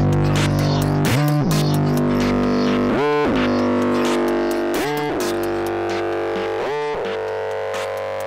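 Electronic trap/bass-music instrumental fading out: a sustained, heavily processed synth chord whose pitch swoops down and back up about every two seconds, with the bass dropping away.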